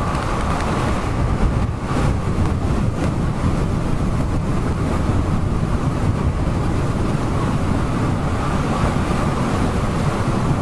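Steady rush of wind on the microphone and tyre noise from an e-bike riding along a road at moderate speed, with a faint steady whine running underneath.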